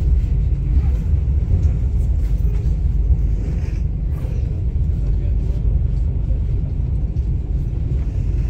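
Passenger train running slowly: a steady low rumble heard from inside the carriage.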